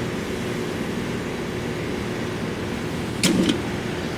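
Steady low mechanical hum with a droning pitch, with a brief rustling noise just past three seconds in.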